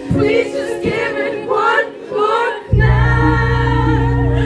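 Several voices singing a live pop song in harmony, in short phrases with brief breaks. About two and a half seconds in, a loud sustained low chord comes in and holds.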